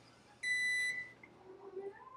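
KHC M3 ketone breath meter giving one high-pitched electronic beep, about half a second long, starting about half a second in, as the breath reading finishes.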